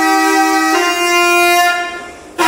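Solo reed wind instrument with a bright, buzzy tone, holding one note and then stepping up to a second about a second in, fading out near the end.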